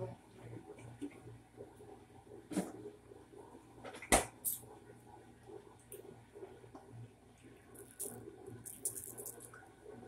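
Dishwasher running directly below the camera with a steady low hum. Over it come a sharp knock about four seconds in and lighter clicks and clatter near the end, from fridge and kitchen items being handled.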